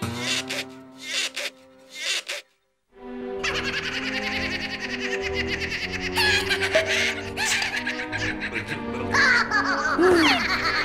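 Cartoon soundtrack of music with a high-pitched animated laughing voice. A few short sound effects come first, then a brief silence about two and a half seconds in, and the music and laughter run together after that.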